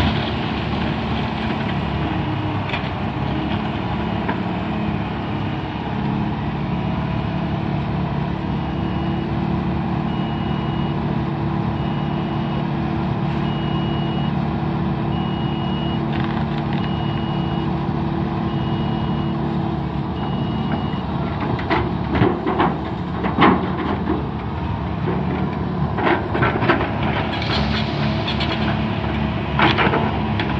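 Diesel engines of a Liebherr wheeled excavator and a tipper truck running steadily, with the truck's reversing beeper sounding about once a second for roughly fifteen seconds as it backs into place. From about two-thirds of the way in come irregular crashes and clatter of wrecked wooden boat debris being dropped into the truck's steel bed.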